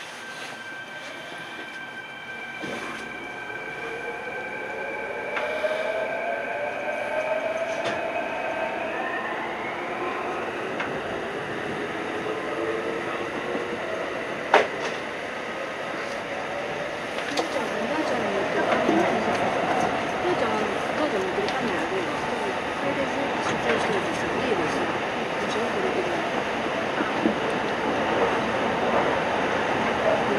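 Electric commuter train pulling away in a tunnel: its traction motors whine, the pitch rising steadily for the first ten seconds or so as it accelerates. A single sharp click about halfway through, then steady wheel-on-rail running noise with some wheel squeal.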